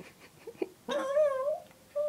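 Small talkative dog 'answering' with vocal whines: a few faint short sounds, then about a second in a drawn-out, wavering whine lasting about half a second, and a second whine beginning at the very end.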